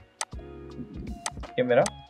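A few sharp computer mouse clicks, one about a fifth of a second in and more about a second later, over a steady background hum.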